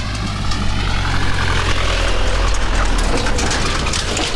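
Pickup truck engine running low and steady as the truck drives past close by on a grass track, its sound fading about three seconds in.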